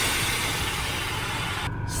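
Air-suspension valves hissing as compressed air rushes from the tank into a Toyota Camry's air bags, raising the car. The hiss is loud and even, and cuts off sharply near the end as the bags reach their set pressure.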